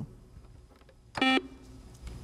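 Quiz-show buzzer system's electronic beep: one short, steady tone about a second in, signalling that a contestant has buzzed in to answer. Otherwise quiet studio room tone.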